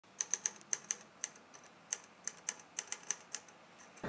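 Quick, irregular run of sharp clicks like keys being typed on a keyboard, about twenty in three seconds, stopping shortly before the end.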